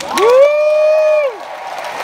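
An audience member's loud whoop: one long call that rises, holds for about a second and falls away, with crowd applause starting near the end.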